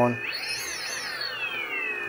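DJI Inspire 1's brushless motors whining as they run. The pitch climbs steeply about a third of a second in, then slowly winds back down.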